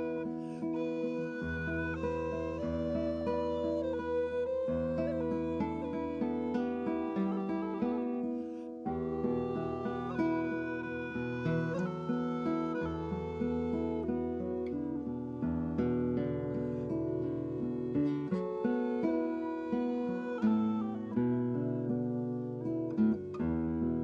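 Nylon-string classical guitar and a wooden recorder playing a tune together: plucked guitar notes and chords under a held, flowing recorder melody.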